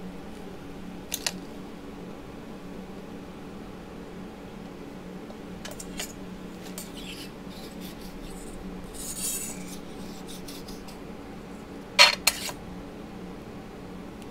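Metal clay tools handled on a hard work surface. There are two light clicks about a second in, a short scrape around nine seconds as a long blade slices the polymer clay, and two sharp clicks, the loudest sounds, about twelve seconds in. A steady low hum runs underneath.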